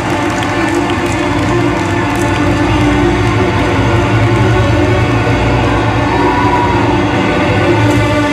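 Live electronic music through a concert sound system: sustained synthesizer tones over a deep, steady bass drone. Crowd cheering is faintly audible in the first couple of seconds.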